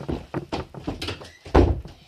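Footsteps on a wooden floor, then a door pushed shut with a heavy thud about one and a half seconds in.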